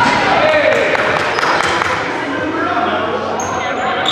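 Basketball game sound in a gymnasium: the ball bouncing on the hardwood court, with players' voices carrying through the hall.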